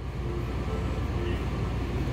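Steady low background rumble, like a running vehicle or machinery.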